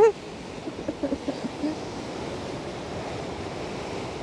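Rough sea surf washing and breaking against a rocky shore in a steady rush, with faint voices in the first couple of seconds.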